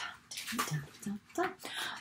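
Paper pages of a picture book being turned, a soft rustling of the sheets in several short sweeps, with a quiet spoken "dum" about halfway through.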